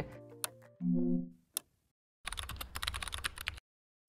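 Rapid computer keyboard typing clicks, a typing sound effect, starting after a brief silence and running for about a second and a half. Before it, background music fades out on a short low chord, with a couple of single clicks.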